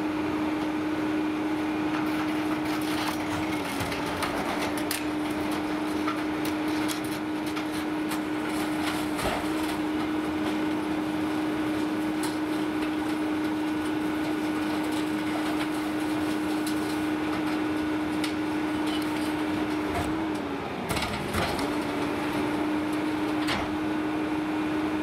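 Peterbilt 520 McNeilus rear-loader garbage truck running steadily with a constant hum from its engine and packer hydraulics, which sags in pitch briefly about three seconds in and again near the end. Scattered knocks and thumps as a bulky couch is heaved into the rear hopper.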